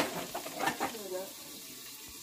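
Brief indistinct talking over a faint steady hiss, opened by a single sharp click.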